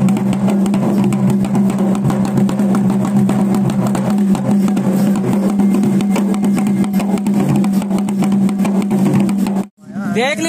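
Dhol drums beating a fast, dense rhythm over a steady low drone, the music accompanying a dancing palanquin procession; it cuts off suddenly just before the end.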